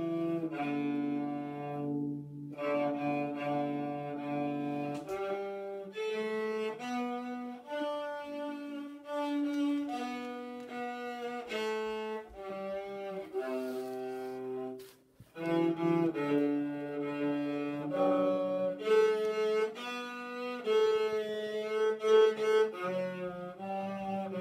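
Solo cello bowed by a young child, playing a simple melody in separate sustained notes, with a short break about fifteen seconds in.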